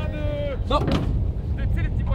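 Steady low rumble of a boat's engine and wind on the open water, under a drawn-out shout in the first half-second and short bits of voice after.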